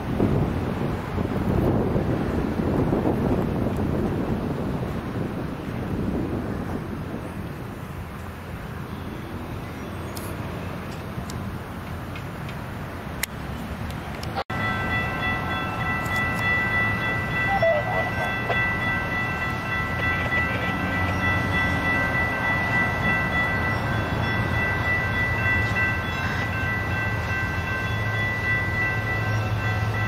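A commuter train rumbling away with wind on the microphone. After a cut about halfway, railroad grade-crossing bells ring steadily over a low rumble that grows toward the end, as a train approaches.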